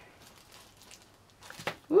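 Faint handling noises: a few light clicks and rustles as hands move small craft pieces of lace, fabric and feathers on a tabletop, with a woman's voice starting at the very end.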